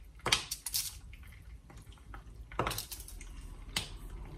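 Squares of dark chocolate snapped apart by hand and dropped into a frying pan of melting butter: a few sharp snaps and clicks in small clusters, with quieter handling in between.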